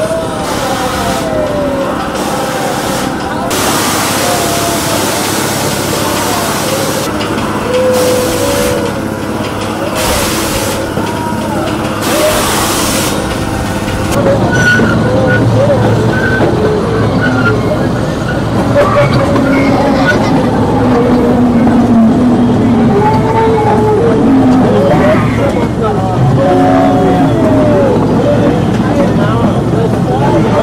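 Voices and chatter of people on amusement-park rides. About halfway through, the sound turns to a ride on a small open amusement-park train, with a steady low rumble under the voices.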